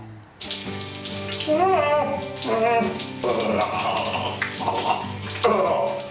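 Overhead rain shower running, water spraying steadily from about half a second in. Brief gliding vocal sounds rise over it about two seconds in.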